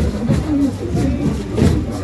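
Street parade sound: music with a steady beat from the floats, thinning out and stopping near the end, over a low vehicle rumble and people's voices.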